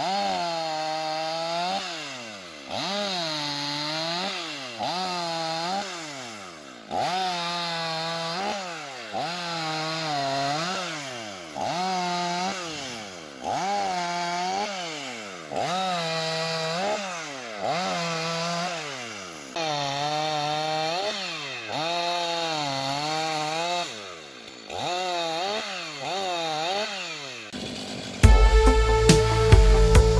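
Two-stroke Stihl chainsaw making a run of short, quick cuts into a log with a freshly square-filed chain: the engine note sags under load as the chain bites and climbs back as it clears, about once a second. Loud music with a heavy beat cuts in near the end.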